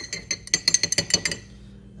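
Metal spoon stirring sesame seeds soaking in water inside a glass jar, clinking rapidly against the glass, then stopping about a second and a half in.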